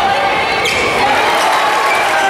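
Live sound of a basketball game on a hardwood court: a ball bouncing amid the players' movement, with voices echoing in the arena.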